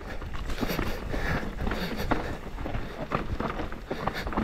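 Mountain bike rolling fast down a rocky dirt singletrack: tyres crunching over stones and roots with a constant clatter of knocks and rattles from the bike, over a steady low rumble.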